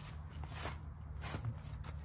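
A few faint, soft footsteps on ground strewn with dry leaves, over a steady low rumble.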